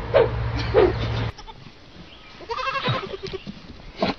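Young goat kids bleating: a couple of short calls in the first second, then one clear, wavering bleat a little before three seconds in.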